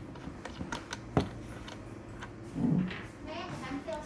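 Light clicks and knocks of a clear plastic battery pack and its clip leads being handled on a table, with one sharp click about a second in.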